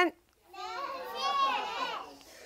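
A group of young children calling out an answer together, many high voices overlapping, starting about half a second in and lasting about a second and a half.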